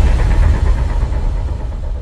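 Deep rumbling tail of an intro sound effect's boom, slowly fading.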